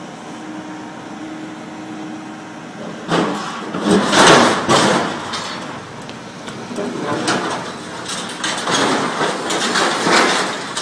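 Excavator-mounted hydraulic scrap shear working a pile of scrap steel: the machine runs steadily at first, then the metal grinds, screeches and crunches loudly in the shear's jaws about three seconds in, and again over the last three seconds as it tears a piece free.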